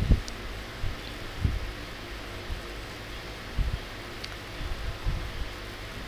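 Chopped garlic sizzling gently in hot olive oil in a wok, a steady hiss, while a wooden spatula stirs it, with a few soft low thumps.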